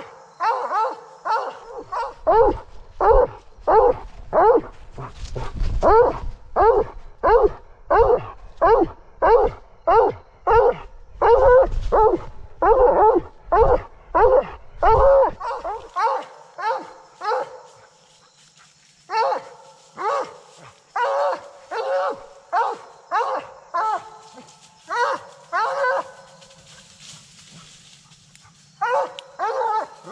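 Blood-trailing hound baying a wounded buck: loud, repeated barks about two a second, breaking off for a few seconds midway, then starting again and dying away near the end. A low rumble runs under the first half.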